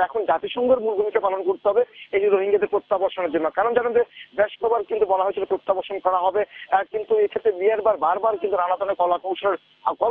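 Continuous speech: a news reporter's live report in Bengali.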